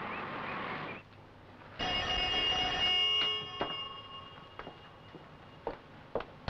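A telephone bell rings for about a second and its ring dies away, followed by a few small clicks and knocks. Before it, a second of steady street noise cuts off suddenly.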